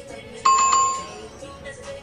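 Notification-bell 'ding' sound effect from a subscribe-button animation: a bright bell tone about half a second in, struck a second time right after and ringing out within half a second, over background music.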